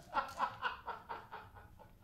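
A man chuckling under his breath: a quick run of short laughs that fades away.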